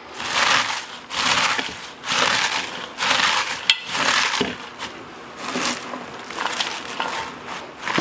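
Hands hard-squeezing shredded cabbage layered with salt in a mixing bowl, a run of wet crunching squeezes about one a second with a short lull midway. This is the massaging that breaks down the cabbage fibres so the salt draws out the brine for sauerkraut.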